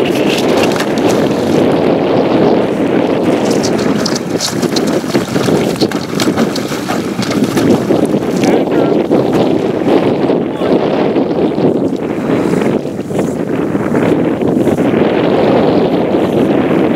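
Wind buffeting the microphone in a steady rush, with a few brief sharp cracks about four seconds in and again around the middle.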